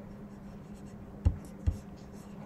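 Two short computer mouse clicks about half a second apart, over a faint steady hum.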